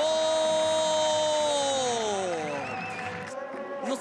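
A football commentator's long drawn-out shout: his voice rises into a held note for about two seconds, then slides down and fades. Stadium background noise runs under it and cuts off suddenly near the end.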